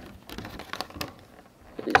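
Clear plastic box insert being handled and pulled free: faint plastic crinkling with a few light clicks, and a sharper click near the end.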